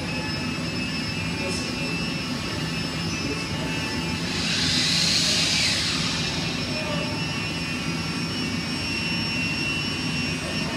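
Steady machinery drone of a woodshop, a low hum with several steady tones over it, with a hiss that swells up and fades about halfway through.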